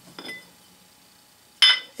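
Cast aluminum mold halves clinking against each other as they are handled: a faint tap shortly after the start, then one sharp, ringing metallic clink near the end.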